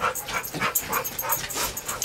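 A dog panting rapidly, about five quick breaths a second.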